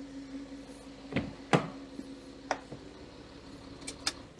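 Several sharp clicks and knocks from handling a Citroën C6 with its lights on, about six spread through, over a steady hum that cuts off right at the end.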